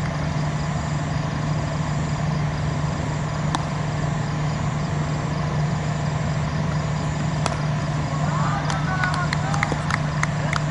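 A steady low hum over a noisy background, with no change in level. About seven and a half seconds in there is a single sharp knock, then shouts and a run of quick clicks near the end.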